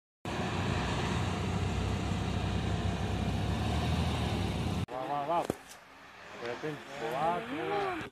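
A car engine running steadily, cut off abruptly a little under five seconds in; then spectators shouting "go, go".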